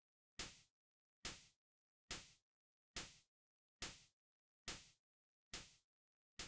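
Synthesized snare built from a Serum noise oscillator shaped by an amplitude envelope, playing on a loop: seven short, quiet noise hits a little under a second apart, each with a sharp attack and a quick decay.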